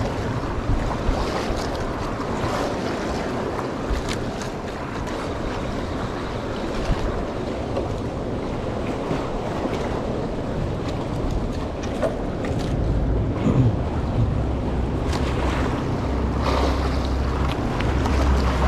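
Wind on the microphone and choppy sea water sloshing around a small boat, with the low wind rumble growing stronger over the last few seconds.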